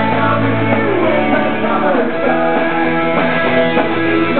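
A pop-punk band playing live and loud: electric guitars, bass and drums, with a male voice singing over them.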